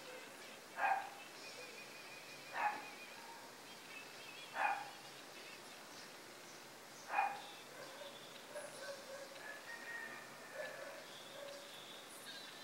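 A dog barking four times, each bark short and a couple of seconds apart.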